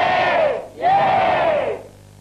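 A group of people shouting together in unison: two long drawn-out calls, each rising and then falling in pitch.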